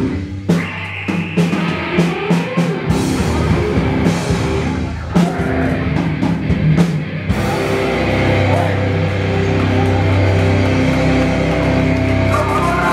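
Live beatdown hardcore band playing loudly: drum kit and distorted electric guitars and bass. About seven seconds in the rapid drum hits thin out and the band holds a sustained, ringing chord.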